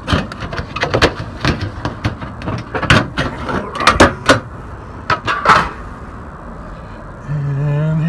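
Galvanized sheet-metal panel of a Mission Multi-Pitch evaporative cooler roof jack being lifted and worked loose by hand: a run of sharp metal knocks and scrapes, loudest about one, three and four seconds in.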